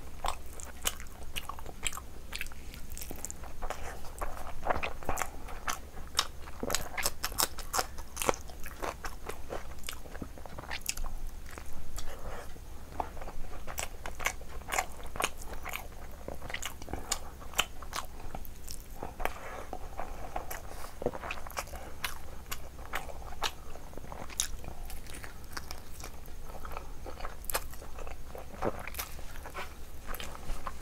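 A person chewing mouthfuls of rice and curry eaten by hand, close to the microphone, with a dense, irregular run of sharp wet mouth clicks and smacks throughout.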